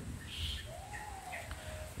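Faint bird calls: one drawn-out note that rises briefly, then slowly falls and levels off, with a couple of short higher chirps around it.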